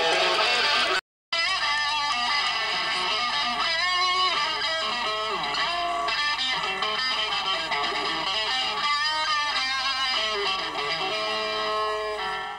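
Live rock band playing with electric guitars, heard through a camcorder's microphone. The sound cuts out completely for a moment about a second in, then the music carries on steadily.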